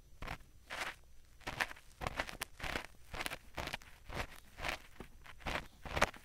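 Ear pick scraping and scratching inside the silicone ears of a binaural microphone, as gentle ASMR ear cleaning. It makes irregular short strokes, about two to three a second.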